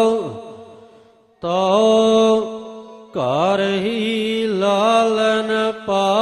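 Gurbani kirtan: a voice singing the hymn in long, wavering held notes with gliding pitch. The note fades away just after the start, there is a short gap, and the singing resumes.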